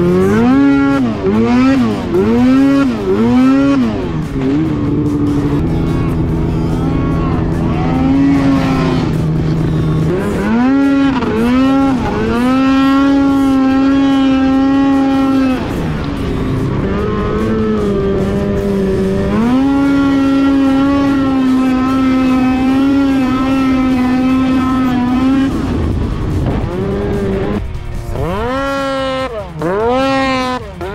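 Arctic Cat 800 two-stroke snowmobile engine heard from on board. It revs up and down in quick blips for the first few seconds, then holds high revs steadily at speed for long stretches, easing off in between.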